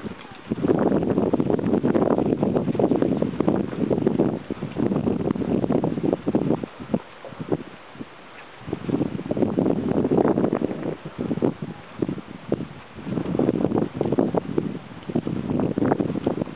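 Wind buffeting the microphone in three long gusts, with the hoofbeats of a trotting horse on arena sand.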